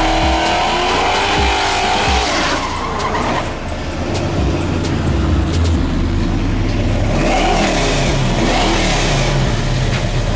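V8 drag cars at the start line: an engine revs high through a smoky burnout with tyre noise, its pitch rising and falling. After a change in the sound around three seconds, another V8 revs up and down a few times near the end.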